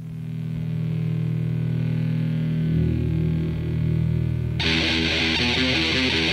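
Hardcore punk recording: distorted electric guitar and bass hold low sustained chords that swell in, then about four and a half seconds in the full band crashes in with drums and cymbals.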